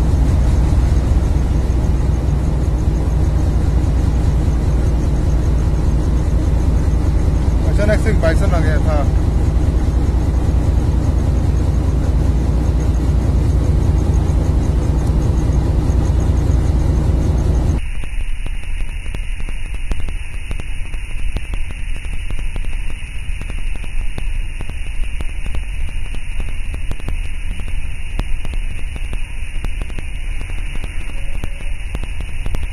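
Diesel locomotive running along the line, a loud steady low rumble heard from on board, with a brief wavering warble about eight seconds in. At about eighteen seconds the sound cuts abruptly to a quieter, thinner background with a steady high hiss.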